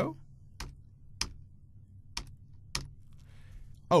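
Four separate computer keystrokes, spaced out rather than typed in a run. They fit single key presses stepping through code in the Visual Studio debugger.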